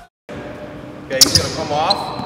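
Basketball practice on a gym's hardwood court: a brief silence, then a sharp smack of a bouncing basketball about a second in, followed by a short rising squeal.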